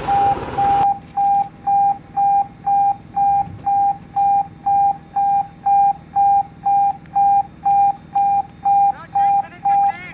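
Rapid electronic alarm beeping, one steady pitch repeating at nearly three beeps a second. A rushing hiss, fitting the hose's water jet, cuts off abruptly under a second in, and a few short rising chirps sound near the end.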